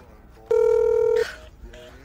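Telephone calling tone sound effect: one steady electronic beep, about three-quarters of a second long, starting about half a second in and cutting off abruptly, followed by a couple of faint short beeps.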